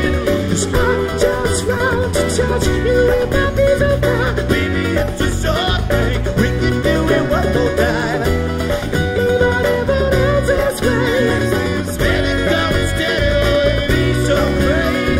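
Live acoustic band playing: two acoustic guitars, electric bass and a djembe, with a male lead voice singing.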